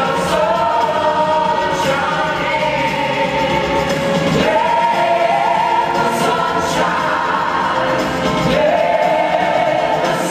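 A group of singers singing a 1970s-style pop song together over backing music, holding long notes in harmony.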